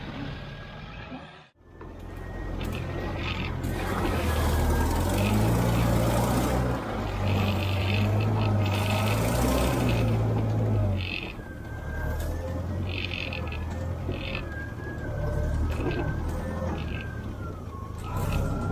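Land Rover engine running, its low sound rising and falling in revs, with a thin high whine that wavers in pitch later on. The sound drops out briefly about a second and a half in.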